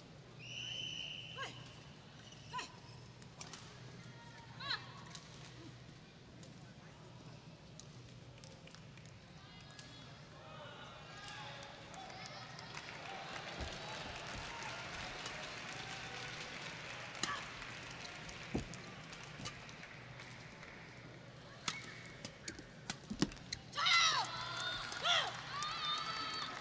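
A badminton rally: sharp racket strikes on the shuttlecock with an arena crowd's voices swelling during the rally. Loud shouts and cheering come near the end as the point is won.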